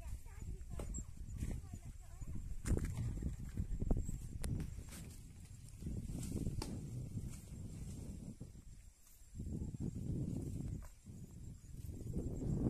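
Irregular sharp knocks of a tool chopping wood, heard from a distance, roughly a second or so apart, over a low outdoor rumble.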